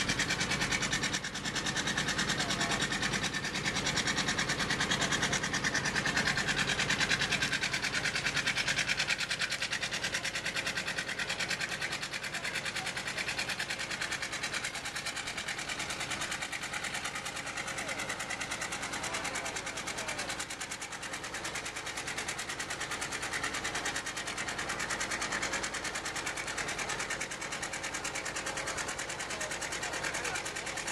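1916 Waterloo steam traction engine running while standing, giving a fast, steady mechanical beat.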